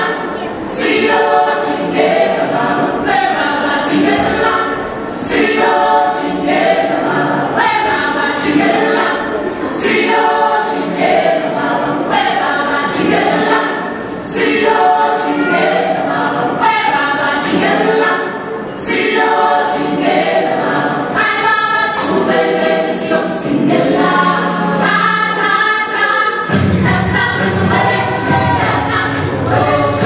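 Musical number from a stage show: a choir singing over backing music with a regular beat. A deep sustained bass note comes in near the end.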